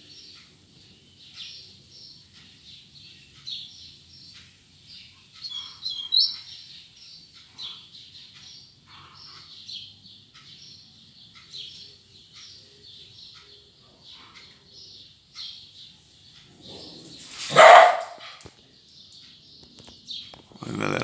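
Caged double-collared seedeater (coleiro) giving a scattered run of short, high chip notes as it moves about its cage, the restless calling its keeper calls the "mexida". Near the end comes one loud, short sound, much louder than the bird's notes.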